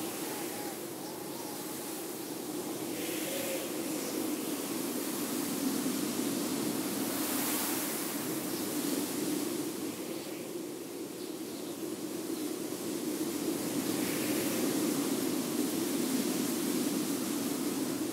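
Steady rushing, wind-like noise that swells and eases every few seconds.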